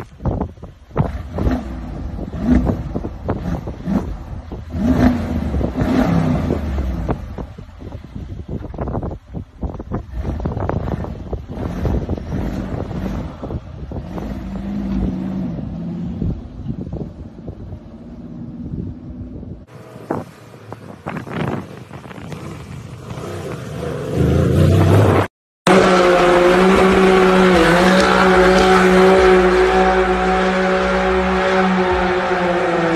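Mercedes-AMG G63 6x6's twin-turbo V8 revving in uneven bursts as its wheels spin in loose sand. Near the end, after a sudden cut, another car's engine is held at steady high revs in a burnout, its tyres squealing, echoing in a road tunnel.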